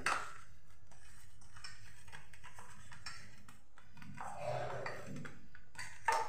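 Faint squishing of hands kneading mashed potato dough in a steel bowl, with a few light clinks against the metal.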